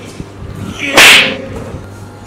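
A single short, loud rush of air about a second in, swelling briefly and then cutting off.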